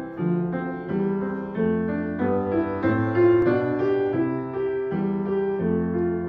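Solo upright piano playing the introduction to an art song: chords and melody notes changing a few times a second, before the voice comes in.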